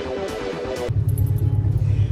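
Electronic background music with a steady beat that cuts off suddenly about a second in, giving way to the deep, steady rumble of a car heard from inside its cabin while it is being driven.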